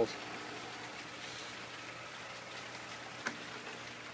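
An air stone bubbling quietly and steadily in a bucket of water, fed by a small electric air pump. A single short click about three seconds in.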